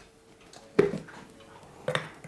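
A plastic taurine powder bottle being picked up and opened: two sharp knocks, the louder about a second in and a smaller one near the end, against faint handling noise.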